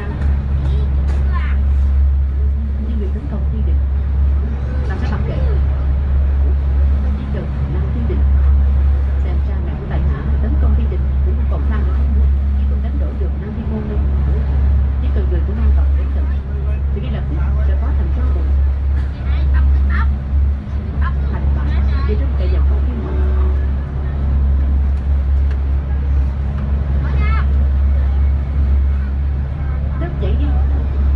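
SuperDong fast ferry's engines running under way, a loud, steady low drone heard from on board.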